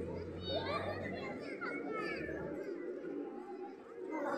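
Indistinct voices of people and children at play, with no clear words. A low rumble underneath fades out about two and a half seconds in.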